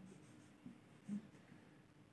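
Faint sound of a marker writing on a whiteboard, nearly silent, with a short soft low sound about a second in.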